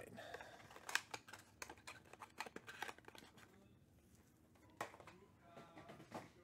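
Trading card packs and a cardboard hobby box being handled on a table: a few light clicks and taps as packs are set down, mostly in the first three seconds, with one more near the end.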